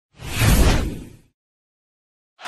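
Whoosh sound effect with a deep low rumble under it, swelling up and fading out within about a second, for an animated title-graphic transition.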